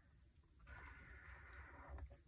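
Faint scratch of a pen tip drawing across planner paper, starting about two-thirds of a second in and running evenly.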